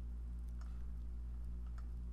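Low steady electrical hum with a couple of faint clicks, one about half a second in and one near the end.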